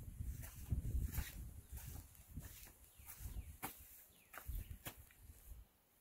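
Faint footsteps on dirt and gravel, soft scuffs and light clicks about every half second, over a low rumble of wind or handling on the microphone.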